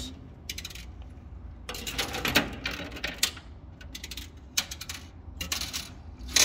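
Metal coins clinking and clattering in a coin pusher arcade machine, in several short, separate bursts, the busiest about two seconds in.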